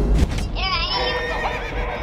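An animal call: a few short clicks, then a high, quavering call that wavers and falls in pitch, starting about half a second in.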